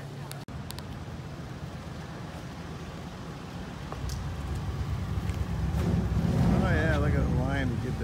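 Outdoor street background noise: a low rumble that builds up over the second half, with people's voices talking over it near the end.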